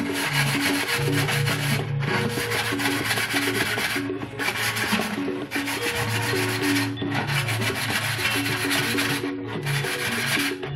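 Continuous scratchy rubbing along the cut rim of a plastic gallon water jug, as the rough cut edge is being smoothed by hand. The rubbing breaks off briefly every couple of seconds. Background music plays underneath.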